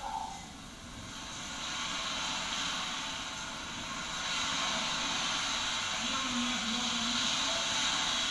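Surf washing on a sandy beach: a steady rushing hiss that swells louder about halfway through, with faint voices of beachgoers underneath.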